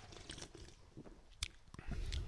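Faint sipping and swallowing of beer from aluminium cans, with a sharp click about one and a half seconds in and low handling rumble near the end as the cans come down.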